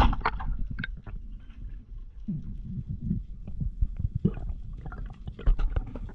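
Underwater sound picked up by a diving camera: a muffled low rumble of moving water, with scattered clicks and knocks and a sharp knock right at the start. About two seconds in comes a short muffled pitched sound.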